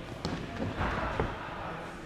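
Sneakers landing on padded foam obstacle blocks as an athlete steps and jumps across them: a few dull thumps and one sharp knock, over background voices.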